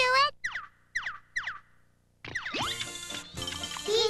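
Three quick comic sound effects, each a whistle-like tone sliding steeply down in pitch, about half a second apart. After a short silence, bouncy children's comedy music starts about two seconds in.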